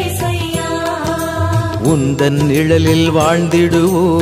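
Tamil Christian devotional hymn: a voice singing long, wavering, ornamented notes over music with a steady low held note and light percussion.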